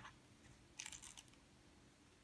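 Near silence, with a brief faint scratchy rustle about a second in: yarn and a steel crochet hook being worked through crocheted stitches.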